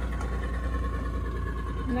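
Outboard motor of a small panga water taxi running steadily as it heads away, a constant low rumble with a faint steady whine.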